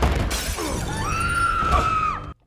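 Movie fight sound effects: a loud, drawn-out crash of glass shattering and breaking as a body is thrown across diner stools, with a steady high tone over the crash in its second half.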